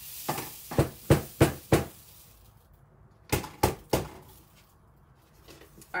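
Sharp knocks on a tabletop come in two runs, four and then three, each about a third of a second apart. They come from knocking the piece to shake excess diamond dust glitter off it.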